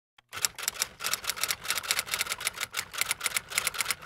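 Rapid, uneven clatter of sharp mechanical clicks like typing, about seven a second, starting just after a brief silence.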